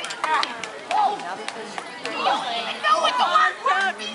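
Overlapping voices from the performers and onlookers, cut through several times by short sharp clacks of a wooden quarterstaff striking a sword in staged combat.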